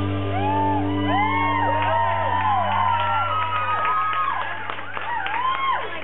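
A live band's low chord held and ringing on while the crowd whoops, shouts and whistles over it in many short rising-and-falling calls.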